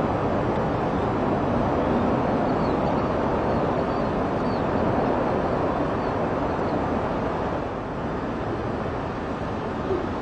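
Steady rushing wind over open ground, easing slightly near the end.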